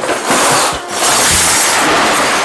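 A kitchen blender running loud, with a brief dip just under a second in before it carries on.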